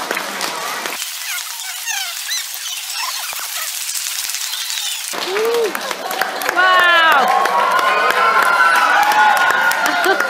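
Clapping from a crowd of children at first. From about five seconds in, a latex modelling balloon being twisted and rubbed gives out curving squeaks, then long held squeals.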